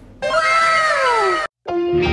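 A single cat meow sound effect, about a second long, falling steadily in pitch and cut off abruptly; guitar music starts just before the end.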